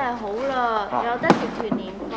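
Cantonese speech between two people, broken by a single sharp crack a little over a second in.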